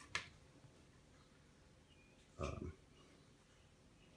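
Quiet room tone broken by a sharp click just after the start and one short, low throat sound, a grunt, about two and a half seconds in.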